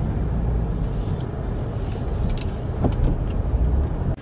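Car cabin noise while driving: a steady low engine and road rumble, with a few faint clicks a little past the middle.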